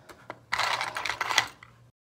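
A small jar of hair gel handled close by and its lid twisted open: about a second of loud scraping with rapid clicks, after a few light taps. The sound cuts off suddenly near the end.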